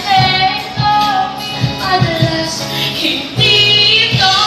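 Vocal group singing a pop song over a backing track with a steady beat.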